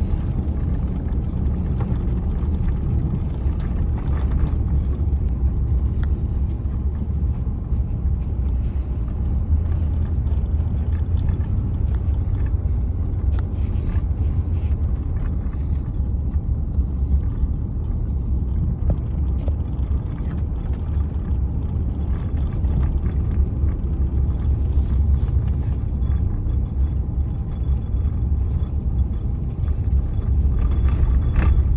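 Steady low rumble of a vehicle driving along a paved road, engine and tyre noise heard from inside the cab.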